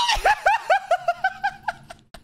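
A man laughing in a quick run of short, high-pitched giggles, about five a second, fading out near the end.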